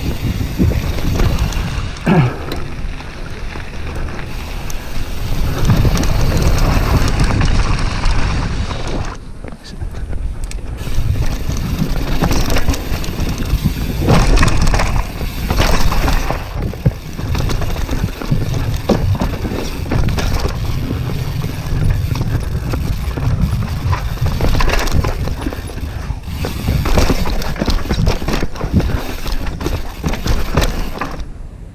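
Downhill mountain bike ridden fast on a dirt and rock trail: wind buffets the mounted camera's microphone over tyre noise and frequent rattles and knocks of the chain and frame on rough ground. There is a brief lull about nine seconds in.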